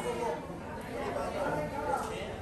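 Quiet, indistinct talking of several voices in a large, echoing hall, with no clear words.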